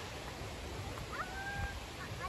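A brief high animal call about a second in, held at one pitch for about half a second, over a steady background hiss.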